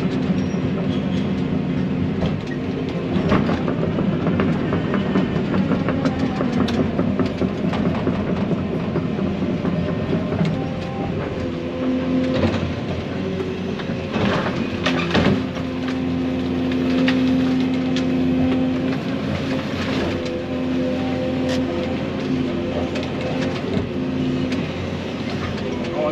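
Excavator engine and hydraulics running under load, heard from inside the cab, the engine note rising and falling as the boom and thumb bucket work. Several sharp cracks and snaps as brush and tree limbs are grabbed and broken.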